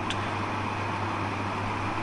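Steady background hum and hiss with a constant low hum underneath, even and unchanging, like room noise from a running fan or air conditioner.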